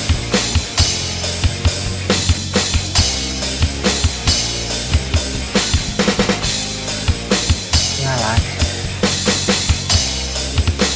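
Drum kit sounds from a phone drum app, kick, snare and cymbals tapped out in a steady rock beat over a Thai rock song's backing track with bass. A short sung phrase comes in about eight seconds in.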